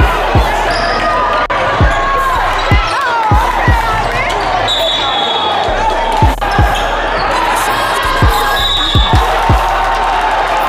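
A basketball bouncing on a hardwood gym floor: about a dozen short, sharp thuds at an irregular pace, over a steady din of voices in the hall.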